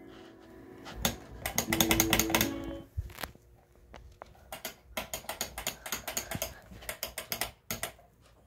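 A plastic rocker light switch flicked on and off over and over, a rapid run of sharp clicks. A dense flurry comes about a second in, then after a short pause a steady string of clicks at about four or five a second.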